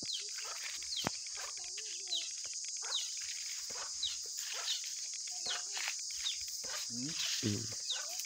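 Outdoor farmyard ambience: a steady high-pitched hiss, with birds chirping in short falling notes about once a second. About seven seconds in there is a brief low, rising call.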